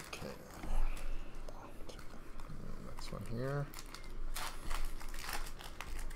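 Trading-card pack wrappers crinkling and rustling in irregular bursts as packs are torn open and cards are handled, loudest about a second in. A brief voice-like sound comes about halfway through.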